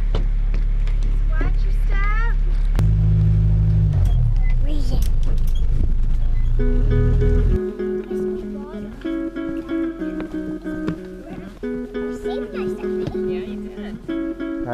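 A tour boat's engine running with a loud, steady low drone that shifts in pitch about three seconds in. About seven seconds in, plucked-string acoustic background music comes in and the engine sound cuts off about a second later, leaving only the music.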